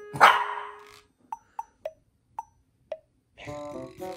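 Long-coat chihuahua puppy gives one sharp bark just after the start, followed by a few short, light ticks.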